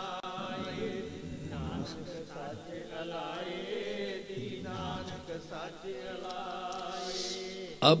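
Devotional chanting by voices singing sustained, wavering notes at a steady, lower level. A louder single voice comes in right at the end.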